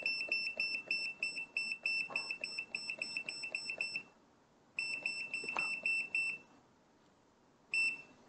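KMOON KKM828 handheld oscilloscope-multimeter giving a short high key beep at each button press as its trigger level is stepped: a rapid run of beeps, about four or five a second, that breaks off a little after halfway, resumes for about a second and a half, and ends with a single beep near the end.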